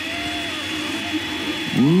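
Creality Ender 3 Pro 3D printer printing: its stepper motors drive the print head with a steady whine over the hum of its cooling fans.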